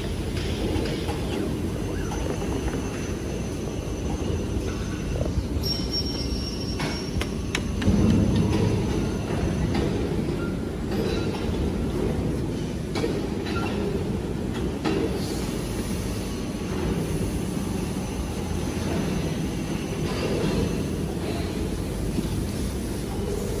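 Steady low mechanical rumble of a tissue-paper maxi-roll slitting machine running, with a few sharp clicks and a louder thump about eight seconds in.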